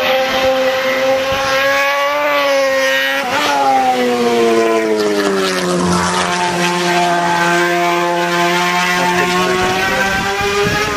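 Ducati Desmosedici MotoGP prototype's V4 engine running hard, its note holding steady for the first few seconds. About four seconds in the pitch falls over roughly two seconds, then holds at a steady lower note.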